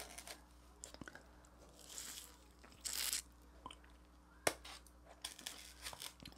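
Quiet, close-up sounds of a person chewing soft frozen durian flesh: small wet mouth clicks, a short hiss about three seconds in, and a sharper click about four and a half seconds in.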